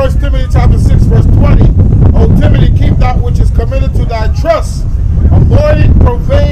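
A man's voice speaking loudly and indistinctly over a heavy, constant low rumble of wind buffeting the microphone.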